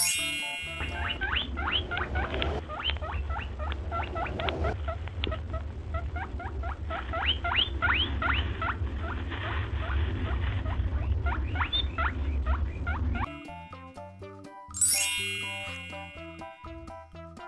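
Small birds chirping in the open with many quick rising notes, a few each second, over a steady low rumble. A bright chime rings at the start and again near the end.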